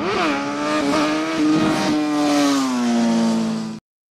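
A loud logo-sting sound effect with one pitch and its overtones, like a revving engine: it jumps up briefly at the start, holds, then sags slowly in pitch under a rush of noise, and cuts off abruptly just before the end.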